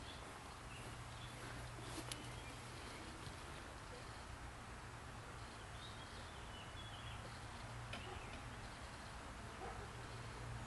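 Quiet outdoor ambience: a steady low hum and hiss, with faint, scattered bird chirps and a single sharp click about two seconds in.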